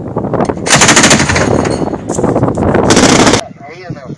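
Truck-mounted ZU-23-2 twin 23 mm anti-aircraft autocannon firing a long, rapid burst, which is at its loudest from about a second in and stops abruptly about three and a half seconds in.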